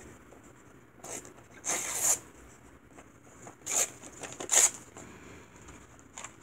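Thin book pages being handled and torn by hand: several short paper rustles and rips, the longest about two seconds in.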